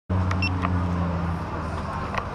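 A steady low engine hum, with a short high beep about half a second in.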